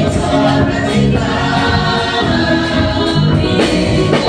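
Upbeat makossa-style gospel praise song with choir singing, over an electric bass guitar playing a line of low notes.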